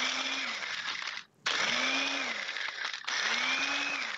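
A 900-watt Ninja Nutri-Blender Plus personal blender crushing ice into snow, run by pressing the cup down in three pulses: the motor stops briefly a little over a second in and again at about three seconds. Each pulse carries a motor tone that climbs as it spins up.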